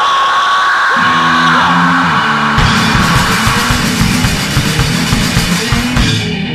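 Lo-fi demo recording of an underground rock band. A long high note is held over thin backing, a low bass-and-guitar riff comes in about a second in, and the drums and full band join at about two and a half seconds.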